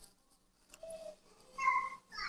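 A cat meowing: a faint short call about a second in, then a louder, longer meow near the end.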